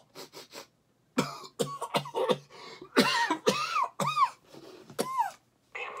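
A man coughing and gagging in a run of fits, put on in mock disgust at a bad smell; the last few fits carry a strained voice that slides up and down.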